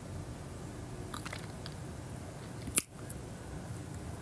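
Quiet room tone with a few faint clicks a little over a second in and one sharp click near three seconds.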